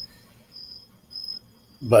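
Faint high-pitched chirping in the pause: a couple of short chirps repeating about every half second over a steady high tone and a low hum, with speech starting again at the very end.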